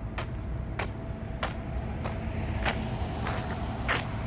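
Footsteps on pavement at a steady walking pace, about one and a half steps a second, over a steady low rumble.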